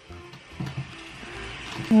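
Faint music from a child's musical toy, with light clicking and rattling as a baby handles a storage box.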